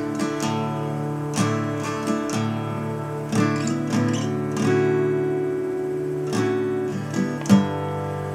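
Acoustic guitar in drop D tuning strummed through a D2 chord shape slid up the neck. There are about ten strums, each chord left ringing, and a louder strum near the end.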